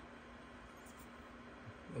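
Faint steady hum with one constant low tone, from the powered mini fridges running on the table.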